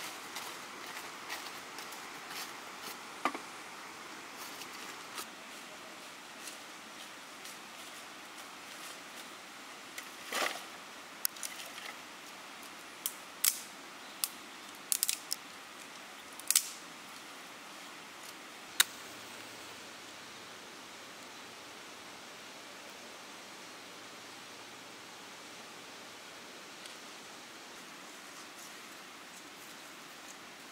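Dry twigs snapped by hand for kindling: about ten sharp, crisp cracks, most of them bunched in the middle third, over a faint steady hiss of open air.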